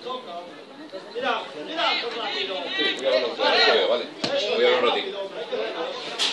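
Several people's voices shouting and calling over one another, loudest in the middle, with one sharp knock about four seconds in.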